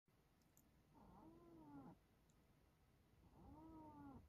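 A domestic cat meowing softly twice, each meow about a second long, rising and then falling in pitch.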